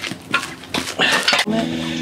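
Plate-loaded steel farmer-walk handles lifted off the pavement: a few short knocks and a scuffing rush of noise as they come up. A steady low hum sets in about one and a half seconds in.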